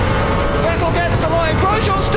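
Formula 1 car's V8 engine running at racing speed, a steady dense drone, with a voice over it.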